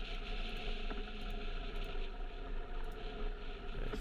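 Steady wind noise on a motorcycle-mounted camera while riding a Yamaha FZ-07 along an open road, with the bike's parallel-twin engine running at an even throttle underneath.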